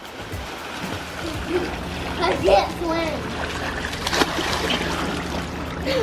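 Water splashing steadily as children swim hard across a pool, kicking and stroking, with faint children's voices shouting over it and one sharper splash about four seconds in.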